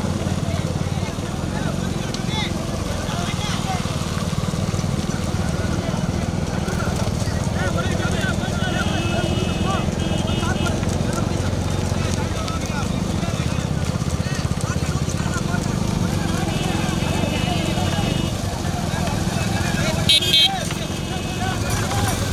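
A pack of motorcycles running close together, their engines a steady hum under a crowd of men shouting. A motorcycle horn beeps in quick repeated bursts twice, about nine and seventeen seconds in, and there is a short loud burst near the end.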